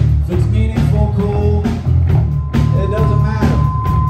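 Live rock band playing: electric guitar, electric bass and drum kit, with regular drum hits over a heavy bass line. A steady high guitar tone comes in about three seconds in.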